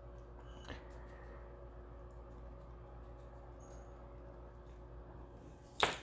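Quiet room tone with a faint steady hum, and one short sharp noise near the end.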